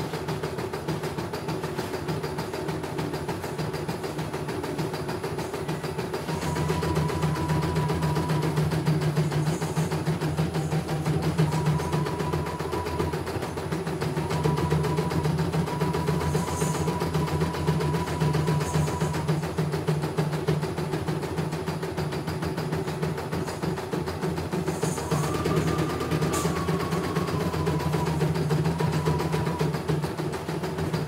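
CNY E900 computerised embroidery machine stitching a design, a steady rapid hum of the needle mechanism that swells louder at times. A faint higher tone comes and goes over it.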